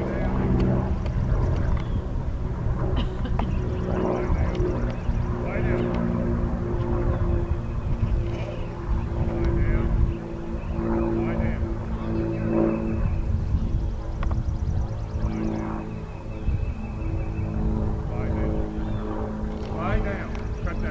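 Indistinct talk over a steady low hum.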